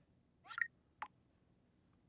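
Near silence: room tone, broken by a brief faint high-pitched sound about half a second in and a single soft click about a second in.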